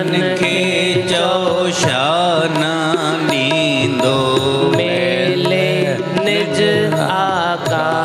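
Devotional song (bhajan): a voice singing a drawn-out, ornamented melody over steady, sustained instrumental accompaniment.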